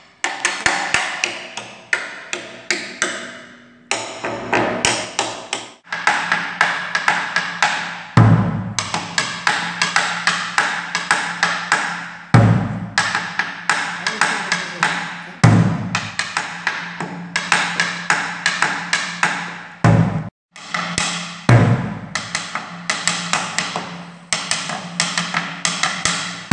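Cumbia pattern played with wooden sticks on a Colombian tambora and a drum laid on its side: fast, sharp clicks on the shells and rims with occasional deeper strokes on the drumhead. The playing breaks off and restarts several times.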